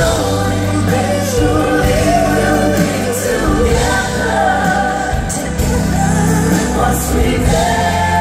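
Live pop ballad performed in a concert hall: a woman and two men singing together in harmony over a band with keyboards and bass, heard from the audience with the hall's echo. The voices hold long, sliding notes without a break.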